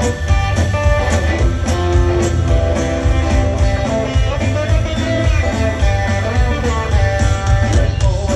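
Live rock band playing loud over a PA: guitars lead over a heavy bass and drums, with an accordion in the band.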